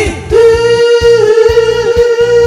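A woman singing a J-pop melody into a microphone, holding one long note that begins about a third of a second in, over backing music with a steady drum beat.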